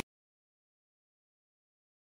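Complete digital silence, with no sound at all.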